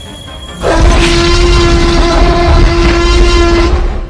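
A loud, steady horn-like tone over a low rumble, starting under a second in and held for about three seconds before it stops. It is a transformation sound effect for hybrid armor forming on an animated Tyrannosaurus.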